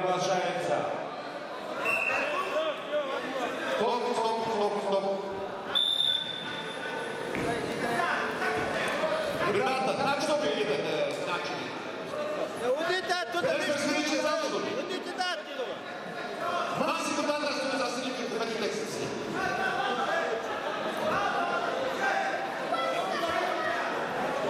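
Several voices shouting and talking over each other in a large, echoing sports hall, with a brief high tone about six seconds in and a few dull knocks.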